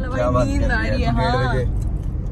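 A woman's voice rising and falling in long wavering notes, over the steady low rumble of a car driving, heard from inside the cabin.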